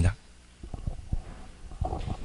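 Soft, irregular low thumps and rumble picked up by a handheld microphone while the person holding it walks.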